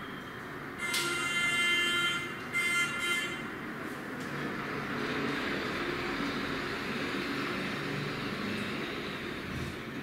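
A horn-like pitched tone sounding twice: once for about a second, then again briefly, over a steady background hum.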